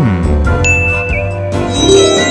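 Background music with a tinkling, ding-like sound effect over it: a bright tone about half a second in that steps down, holds and wobbles before fading.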